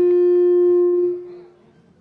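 Public-address feedback: a loud, steady single-pitched tone with overtones, held and then dying away a little over a second in, leaving faint hall noise.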